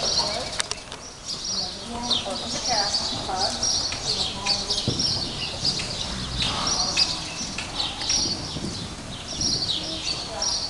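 Small birds chirping over and over in a busy, high-pitched twitter, with a few faint knocks among them.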